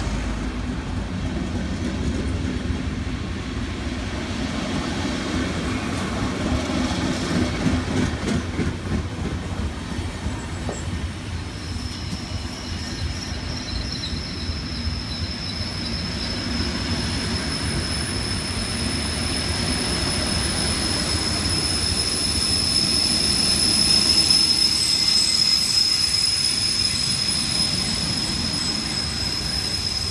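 Passenger coaches and double-deck car-carrier wagons of a train arriving at a station roll slowly past, the wheels rumbling and clicking over the rail joints. A steady high-pitched wheel squeal sets in about a third of the way through and grows louder later on, as the train slows into the station.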